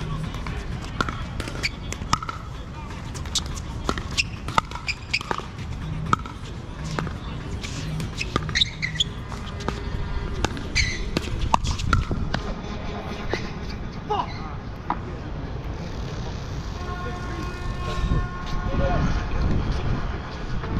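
Pickleball rally: a run of sharp pops from paddles striking the plastic ball and the ball bouncing on the hard court. They come irregularly, about once or twice a second, for the first twelve seconds or so, and then thin out.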